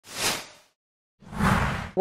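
Two whoosh transition sound effects: a short one, then after a brief silence a longer, fuller one with more low end.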